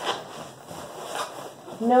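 Bubble wrap and cardboard rustling as bubble wrap is pushed down into a shipping box, with brief scrapes near the start and about a second in.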